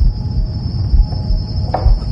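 Crickets chirring in one steady high band over a low, uneven rumble, with a brief rustle near the end.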